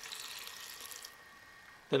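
Water being poured from a mug into a blender jar packed with chopped greens, a faint splash that stops about a second in.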